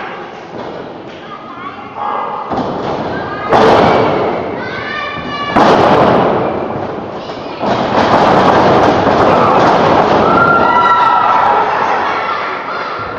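Sudden heavy thuds of wrestlers hitting the ring mat, the loudest about three and a half and five and a half seconds in, with a third about seven and a half seconds in. Voices shout from the crowd throughout.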